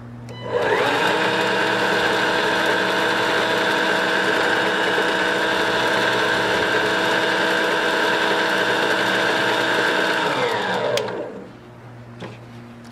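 Allett 40-volt cordless cylinder mower with its aerator cassette fitted, the electric motor spinning the tine reel while the mower stands still. The whine rises in pitch as the reel spins up about half a second in, holds steady for about ten seconds, then falls away as it winds down near the end.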